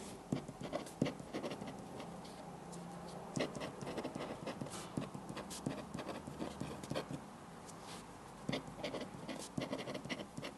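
Irregular light taps and scratches of desk work, with small clusters of sharper clicks, over a steady quiet room background.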